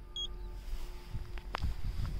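Paint thickness gauge giving a short high electronic beep as its probe takes a reading on the car's front fender. Two light clicks follow about a second and a half in, over a faint steady hum and handling rumble.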